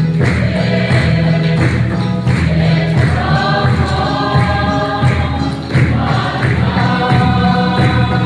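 A congregation singing a gospel hymn together, backed by an electronic keyboard's sustained bass and a drum keeping a steady beat of about two strokes a second. The massed voices grow stronger about three seconds in.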